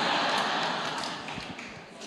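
Audience noise in a hall: a wordless swell of crowd sound that fades away over about two seconds.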